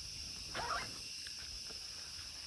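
Rainforest insect chorus, a steady high-pitched buzzing. About half a second in, a short animal call with a wavering pitch sounds over it.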